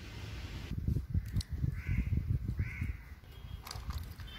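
A crow cawing twice, about two seconds and almost three seconds in, over a low rumbling noise.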